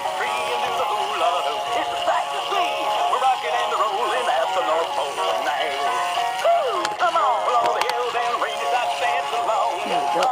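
Several battery-operated singing Christmas figures playing at once: overlapping electronic tunes and synthetic singing voices in a steady jumble.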